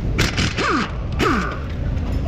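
Impact wrench triggered in two short bursts about a second apart, each one briefly hammering and then winding down with a falling whine.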